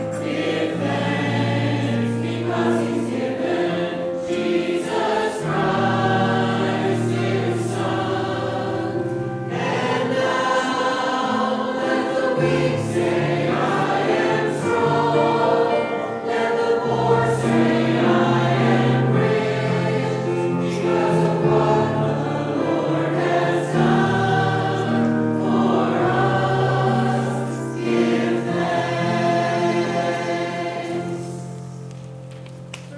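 Church choir singing a hymn in parts, with long held chords that change every second or two.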